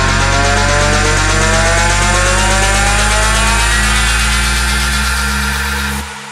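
Electronic dance music build-up: a loud, buzzing synth riser climbs steadily in pitch over a sustained bass. It cuts off abruptly at the end.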